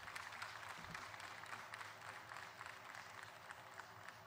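Audience applauding: a light patter of many hand claps that dies away near the end.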